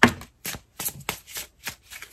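A deck of oracle cards being shuffled by hand: a quick, irregular run of short card flicks and riffles, the loudest right at the start.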